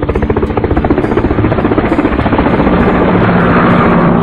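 Propeller aircraft sound effect: a fast, even rotor chop that grows louder over the few seconds.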